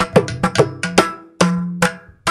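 Mridangam and ghatam playing a fast Carnatic rhythmic passage: sharp strokes several times a second, some sliding down in pitch after the hit and ringing on.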